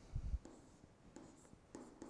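Faint tapping and scratching of a stylus on a tablet screen as short strokes are handwritten, with a low bump about a quarter second in.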